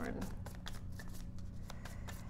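A deck of tarot cards being shuffled by hand: a fast, uneven run of light card clicks and riffles.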